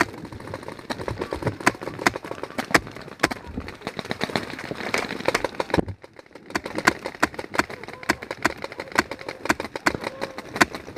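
Paintball markers firing in quick, irregular shots: the player's own marker close by among many shots from across the field. The firing pauses briefly about six seconds in.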